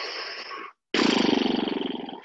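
A person breathing hard through a held yoga pose: a short breath in, then a louder, longer, rasping breath out that fades away.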